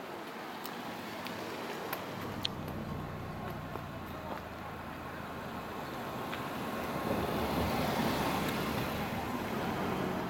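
Cars driving slowly past close by, a steady low engine hum and tyre noise that swells to its loudest about three-quarters of the way through.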